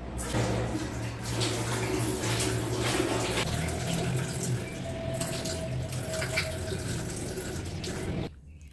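Water running from a washbasin tap into the sink, with irregular splashes as water is scooped up and splashed onto the face.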